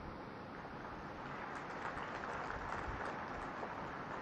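Faint applause from a large audience, swelling about a second and a half in and thinning out near the end.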